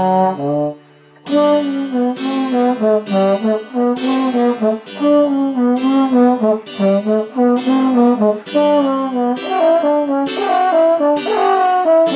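Trombone playing a quick baroque sonata movement. A held low note breaks off for a breath just under a second in, then a running line of quick, detached notes follows.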